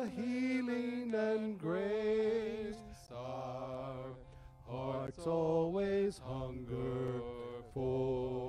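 Men's voices singing a slow church song together, holding long notes with vibrato over a steady keyboard accompaniment. The singing softens for a moment in the middle, then picks up again.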